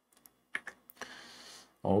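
A few sharp clicks of computer keys about half a second in, followed by a soft hiss, in a pause of the talk.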